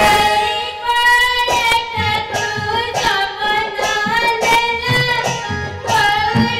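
A high singing voice with a wavering pitch, holding long notes of an Odia folk-theatre song over steady accompaniment, with drum strokes about twice a second.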